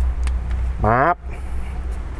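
A steady low rumble, with a faint click near the start.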